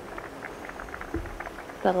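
Faint background nature soundscape with a light, crackling texture of many small ticks, and a soft low thump just over a second in. A woman's narrating voice begins right at the end.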